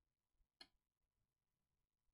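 Near silence, with a single faint click a little over half a second in as a laptop CPU is lifted out of its socket.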